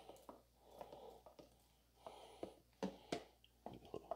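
Near silence with a few faint, scattered taps and scrapes: a silicone spatula working against a plastic container as crawfish tails are scraped out into a slow cooker of stew.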